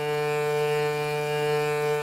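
Hurdy-gurdy trompette string bowed by the cranked wheel, sounding one steady, unchanging low note. The string is still slack from shipping, so it sounds a D, well below its proper G tuning.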